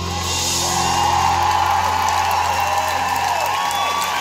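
A live rock band holding its closing chord, a steady low bass note that dies away near the end, while a large arena crowd cheers and screams over it.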